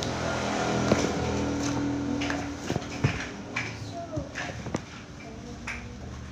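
Indistinct background voices and music, with a steady hum-like tone over the first two seconds and a few sharp clicks scattered through.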